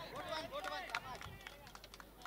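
Faint distant voices of players and spectators calling out across the ground, with a few light clicks.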